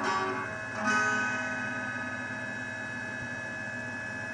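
Guitar playing the final strummed chords of the song: one at the start and another about a second in, left to ring out and fade. A steady hum stays underneath.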